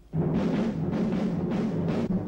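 A film-score sting: a sudden loud burst of orchestral music led by timpani, swelling in beats about twice a second.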